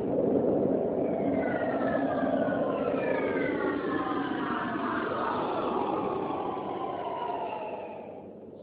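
Video intro sound effect: a steady rushing sound with several tones sliding slowly downward over it, fading near the end.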